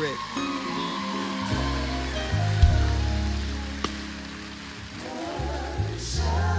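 Church band playing slow held chords over deep bass notes that change every second or so, with water splashing in a baptismal pool as a candidate is immersed and raised. A voice comes in near the end.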